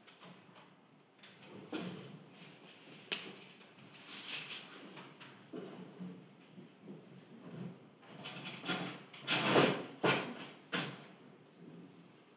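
Sheets of paper being handled and pulled apart: scattered rustles and crinkles, thickest and loudest about nine to eleven seconds in.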